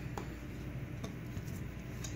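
Quiet handling of a glass sheet with aluminium foil being pressed onto it: a light tick or two near the start over a low steady hum.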